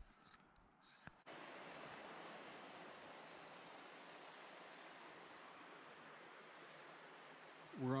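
Steady rushing of a shallow river running over rocks, coming in suddenly about a second in after a faint start.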